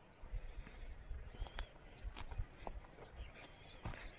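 Wind buffeting the microphone with a low rumble, broken by scattered light clicks and knocks. A faint bird chirp comes about a second and a half in.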